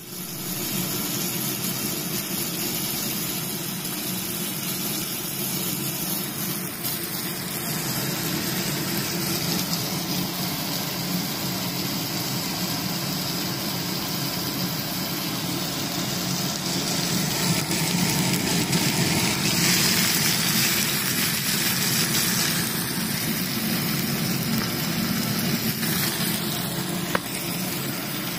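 Miele induction cooktop's integrated downdraft extractor fan running steadily, drawing off steam, with food frying in a pan on the hob; a little louder about two-thirds of the way in.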